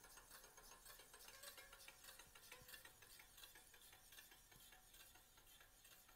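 Faint ticking rub of a spinning 140 mm bicycle disc brake rotor against the pad of a Shimano Ultegra hydraulic caliper. It rubs all the way round, a sign that the caliper is not centred over the rotor.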